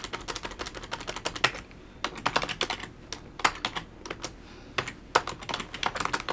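Typing on a computer keyboard: uneven runs of quick keystrokes broken by brief pauses.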